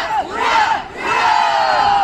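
Ranks of young cadets shouting "Ura!" together in unison, the formal reply to a commander's congratulation: repeated shouts, the last one long and falling in pitch.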